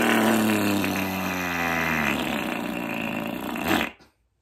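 A long mouth-made fart noise, air blown out through puffed cheeks squeezed between the hands, buzzing low with its pitch slowly sinking. It cuts off near the end, followed by a short laugh.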